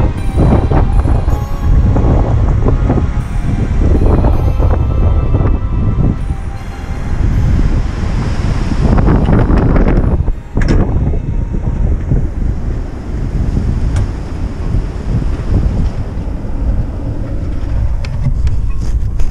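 Strong, gusty storm wind buffeting the microphone: a loud low rumble that swells and eases, with a brief lull about ten seconds in.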